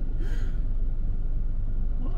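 Steady low rumble of a large dump truck's diesel engine running close beside the car, heard from inside the cabin.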